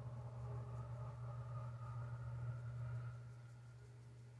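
Steady low hum with fainter higher steady tones above it; the higher tones fade away a little after three seconds in, leaving the low hum.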